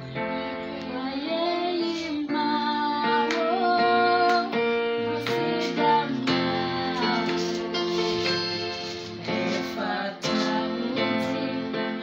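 Electronic keyboard playing sustained worship chords, with a high voice singing a slow, wavering melody over them.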